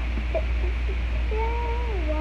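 A short series of small squeaks, then a drawn-out meow-like cry that holds steady and falls in pitch at its end.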